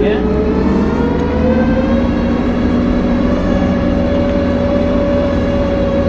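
Bizon BS combine harvester's diesel engine and drive running steadily on the move, heard from inside the cab: a heavy low rumble with a steady whine that rises a little in pitch over the first two seconds and then holds.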